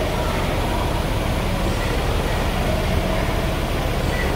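Steady outdoor street noise with a constant low rumble.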